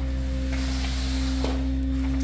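A steady hum with a constant mid-pitched tone above it, unchanging throughout, as from a machine running.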